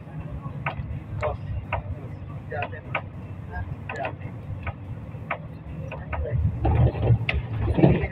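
Roadside street sound: a steady low traffic rumble with a run of short, sharp clicks about twice a second, and muffled voices growing louder near the end.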